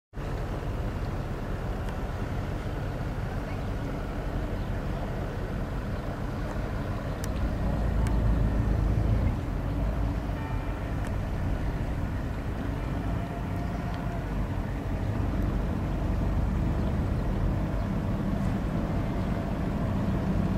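Sailboat's inboard engine running steadily at low speed as the boat motors along, a little louder for a couple of seconds near the middle.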